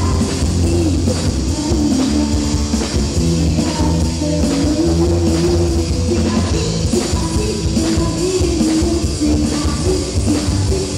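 A live rock band playing through a stage PA: drum kit, electric bass and electric guitar, with a woman singing the lead.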